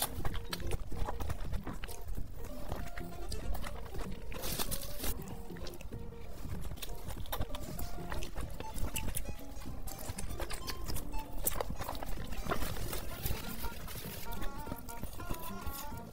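Close-miked wet chewing, slurping and lip smacks of someone eating a soft, saucy, spice-coated green pepper, over background music.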